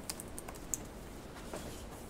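Marker pen on flip-chart paper: a few short, sharp scratching strokes and ticks as a line is drawn.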